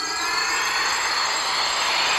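Sound effect for the enchanted horse rising into the air: a steady hiss laced with several thin, high ringing tones that glide up a little near the start.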